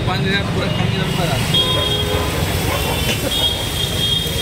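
Busy street-market din: voices of people close by over a steady low rumble of traffic, with high steady tones sounding about halfway in and again near the end.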